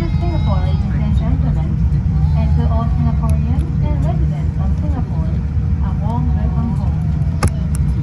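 Steady low rumble inside the cabin of a Boeing 787-10 rolling on the ground just after landing, with a single sharp click near the end.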